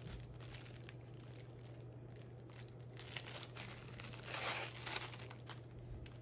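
Thin plastic wrapping crinkling as it is pulled open and off a roll of embroidered ribbon trim, with scattered small crackles and a louder rustle about four and a half seconds in.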